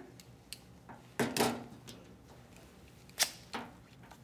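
Sharp clicks and light handling noise as a balloon catheter and its inflation device are worked by hand. The sharpest click comes a little after three seconds in, with another just after it.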